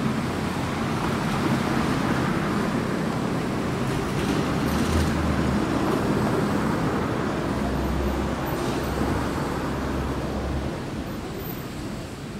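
Street traffic noise: a steady hum of passing vehicles, with a deeper rumble swelling about four to five seconds in and again from about eight to ten and a half seconds, then easing off near the end.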